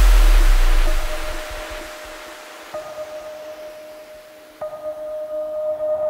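Festival-bounce electronic dance track dropping into a breakdown: a loud bass and noisy crash fade away over the first two seconds, leaving a quiet, steady held synth tone. A higher note joins it about three seconds in, and short rhythmic synth notes begin building near the end.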